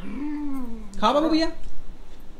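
A person's voice making long, wordless 'aaa' sounds: one drawn-out call that falls in pitch, then a shorter rising one about a second in, coaxing a baby to open her mouth for a spoonful.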